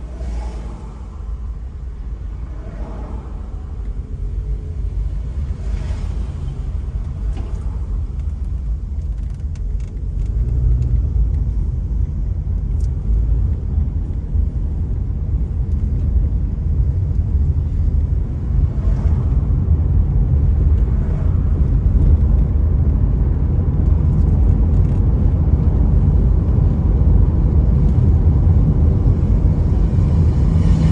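Car driving along a road: a low, steady rumble of engine and tyre noise that grows gradually louder as the car gathers speed.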